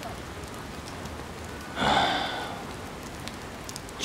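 Steady rain falling. About halfway through, a short breathy vocal sound like a sigh is heard.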